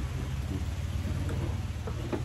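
Steady low background rumble, a constant hum under everything with no guitar being played.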